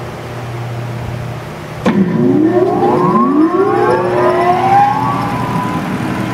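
Cincinnati mechanical plate shear's electric drive motor switched on about two seconds in with a sudden click. A rising whine follows as the motor and its belt-driven flywheel spin up, levelling off toward running speed near the end.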